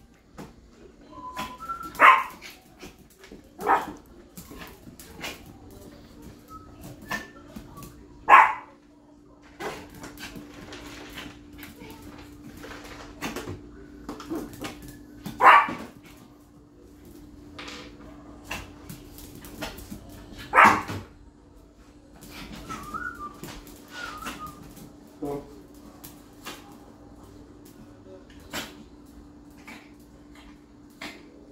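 Small dog barking sharply five times, several seconds apart, with a few softer yips between, as it begs and jumps up for a treat.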